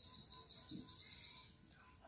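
A small bird singing a fast trill of short, high, evenly repeated notes, which stops about one and a half seconds in.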